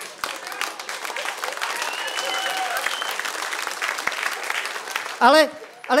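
Audience applauding and laughing after a joke, with dense clapping throughout. A man's voice cuts in near the end.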